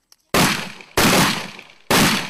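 M1014 (Benelli M4) semi-automatic 12-gauge shotgun firing three quick shots, well under a second apart, each report trailing off with an echo.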